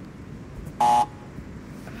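A man's single short, loud yell of effort about a second in, held on one pitch, as he throws a twisting flip. Faint steady outdoor hiss around it.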